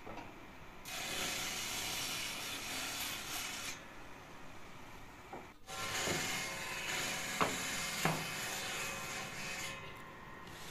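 Corded electric drill running and boring into a small wooden block: a steady motor whine with the bit grinding through the wood, and two sharp clicks in the second half. The first half holds a similar stretch of power-tool noise that stops briefly near the middle.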